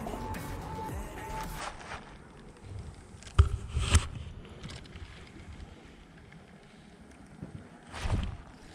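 Wind and handling noise on a head-mounted camera's microphone during a lure retrieve, with a thin steady whirr in the first couple of seconds that cuts off. Two sharp knocks come about three and a half and four seconds in.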